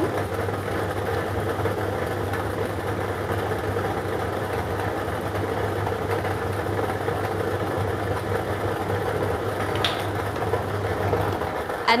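A lottery ball draw machine runs steadily, its blower keeping the balls tumbling in its clear chambers. There is one short click about ten seconds in.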